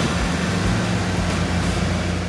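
Steady rushing noise with a low hum from a parked Airbus airliner on the airport apron.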